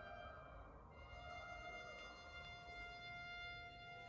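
String ensemble of solo violin, violins, viola, cello and double bass playing very softly: faint held high notes, with a new note entering about a second in.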